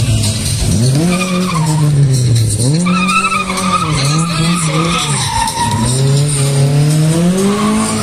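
Lada 2101 saloon's four-cylinder engine revving up and falling back several times as the car is thrown through a tight tyre slalom, with tyres squealing in the turns.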